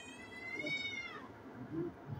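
A single high-pitched, drawn-out animal call lasting about a second and a half, rising slightly and then falling away at the end.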